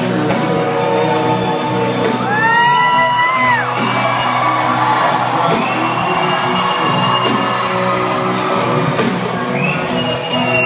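Live country band playing a slow ballad through a large hall's PA, heard from within the audience, with a steady drum beat under guitars. Audience members whoop over the music, with a high held shout about two and a half seconds in.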